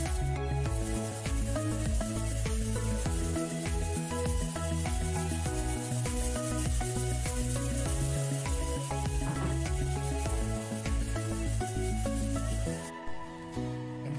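Background music with sustained chords over a changing bass line; the treble drops away shortly before the end.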